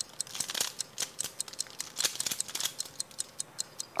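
Pyraminx puzzle being speed-solved by hand: quick, irregular plastic clicks and rattles as its faces are twisted, several turns a second.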